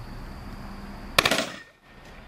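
A single sharp, loud bang a little over a second in, ringing out briefly and dying away within half a second. Before it there is a faint steady background with a thin high whine.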